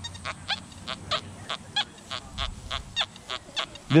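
XP Deus metal detector sounding a rapid string of short tones, about four or five a second, some bending in pitch, as the X35 coil is swept over a buried test target in the full-tones program.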